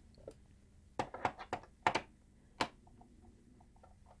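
Workbench handling noises: a quick run of about six short knocks and clicks, starting about a second in, as a Bose three-disc CD changer's housing and a screwdriver are handled, followed by a few faint light ticks.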